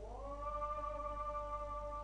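One long vocal note that slides up at the start and then holds a steady pitch.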